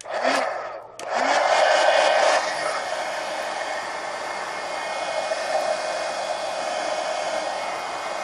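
Handheld heat gun blowing, drying a wet acrylic paint wash on a colouring-book page. A short blast dies away in the first second, then it runs steadily from about a second in, easing slightly after a couple of seconds.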